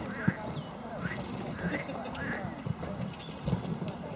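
Hoofbeats of a showjumping stallion cantering on a sand-and-gravel arena surface, a dull beat roughly every half second, with spectators chattering in the background.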